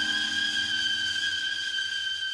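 The closing note of a sped-up nightcore edit of a cover song: one high note held steady and slowly fading away on its own.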